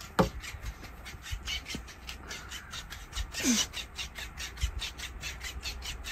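A cat playing with a fabric fish toy: fast, even rustling and scuffing of the toy against fur and upholstery, with a few soft thumps. Two short cries fall in pitch, one right at the start and one about three and a half seconds in.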